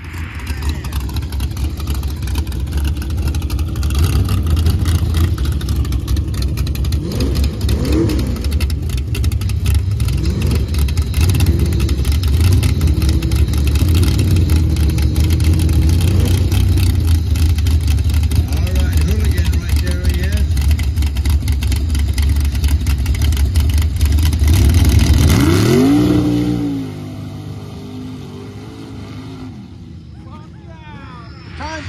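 Mud-race truck's engine revving hard while it churns through a mud pit, the note climbing and falling again and again with the throttle. About 26 seconds in it gives one last rise and fall, then drops to a much lower, steadier sound as the truck moves off.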